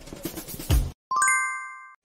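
A bright chime of several ringing pitches, struck once about a second in and fading over about a second: an edit's transition sound effect. Before it, a short stretch of noisy film soundtrack cuts off.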